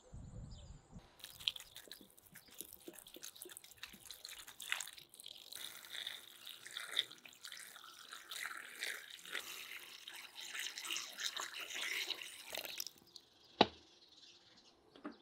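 Water poured in a steady stream into a cauldron of dried meat pieces, splashing and gurgling as the pot fills; the pour stops near the end. A single sharp knock follows.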